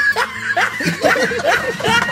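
People laughing: a string of short laughs that rise and fall several times a second.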